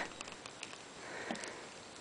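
Faint handling of a plastic action figure, its arm being worked at the elbow joint, with a few light ticks and a soft breathy swell about a second in.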